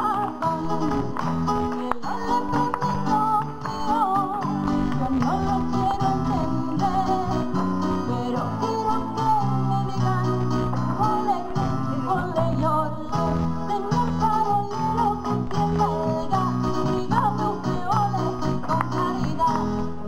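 Amplified Spanish flamenco-style song: a woman sings wavering melodic lines into a microphone over guitar accompaniment and changing bass notes, without a break.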